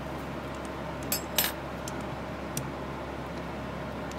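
A few light metallic clicks and clinks of small steel and brass model-engine parts being handled: two sharp ones close together about a second in, a fainter one about a second later, over a steady low hum.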